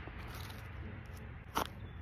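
Faint background noise, then one short sharp crunch of paper fast-food litter being handled about one and a half seconds in.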